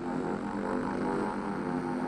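A steady musical drone with several pitches held together, from intro music.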